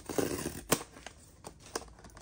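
A small cardboard blind box being opened by hand: a short scraping rustle as the fingers work at its edge, then a sharp snap of the card flap about three-quarters of a second in, followed by a few faint clicks of the box being handled.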